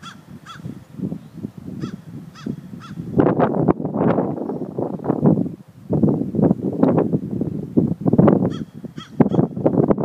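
Crows cawing in quick runs of three, followed by a louder, denser stretch of bird calling from about three seconds in; the runs of three caws return near the end.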